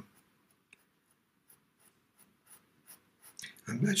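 Faint scratching of a pastel pencil stroking across pastel paper in short, light strokes. A man's voice starts near the end.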